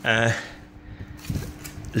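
A man's voice says a short word at the start, then quieter handling noise from a plastic sheet of frozen water pouches being turned in the hand, over a steady low hum.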